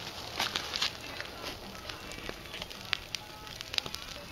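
Wood campfire crackling, with irregular sharp pops and snaps from the burning logs.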